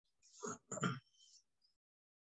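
A man clearing his throat: two short rasping bursts in quick succession about half a second in.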